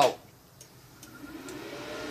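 Flameweld CUT50DP inverter plasma cutter powering up: its cooling fan starts about a second in and rises in pitch and level to a steady run.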